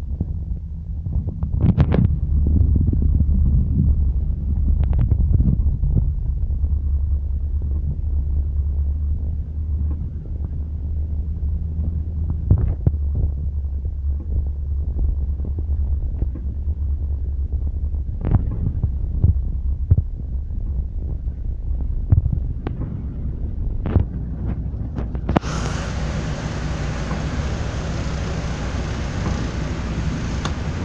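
Low, steady rumble of a vehicle driving through floodwater, heard from inside the cabin, with scattered knocks. About 25 seconds in, a loud steady hiss sets in suddenly.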